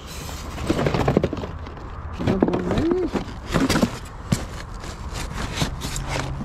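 Cardboard boxes and plastic packaging rustling, crackling and scraping as gloved hands rummage through a dumpster full of rubbish, with a brief murmur from a person about halfway through.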